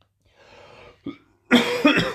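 A man coughing into his fist: a faint breath in, then a loud, harsh cough about one and a half seconds in.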